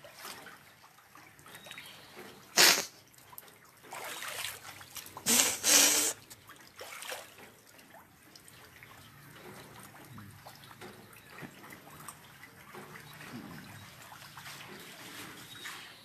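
Water splashing in shallow floodwater: a few short splashes in the first six seconds, then a low, steady background.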